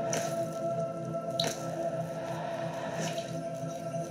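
Ambient electronic score: a held, steady chord with three short plinks about a second and a half apart.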